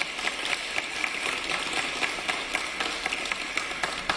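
Applause: many people clapping together in a dense, steady patter.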